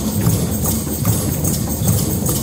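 A drum circle of hand drums, djembes among them, played together in a dense, fast, steady rhythm, with a constant high rattle on top.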